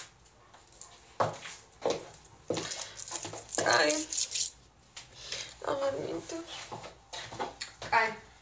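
A woman's voice in short, broken bits of speech, between brief knocks and rustles from the phone being handled close up.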